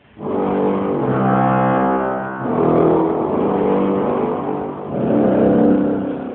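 Bedient tracker pipe organ playing with its bombarde reed stop: three loud, long held chords one after another, with a rich buzzy reed tone.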